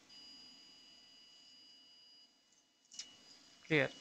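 Faint steady electronic tone in two pitches from the cath-lab X-ray system during a contrast cine run. The higher pitch stops about halfway and the lower one a little later. A short click follows near three seconds.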